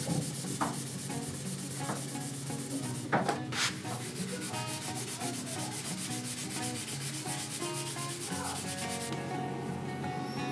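A rag rubbing finish onto the resin-filled oak edge of a slab tabletop in quick back-and-forth strokes, with two brief knocks about three seconds in. The rubbing stops about a second before the end.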